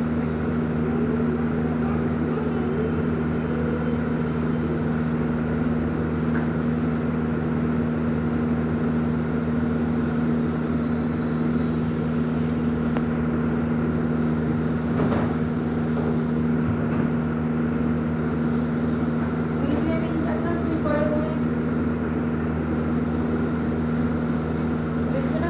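A steady, even mechanical hum holding constant low tones, with faint indistinct voices in the background.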